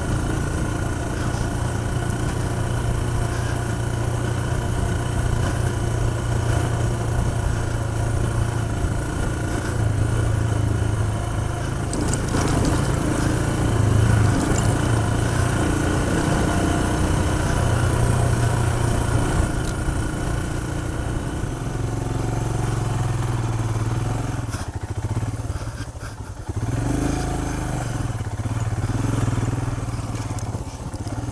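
Royal Enfield Himalayan's single-cylinder engine running under load as the bike is ridden through loose sand. The engine eases off and dips briefly about 25 seconds in, then picks up again.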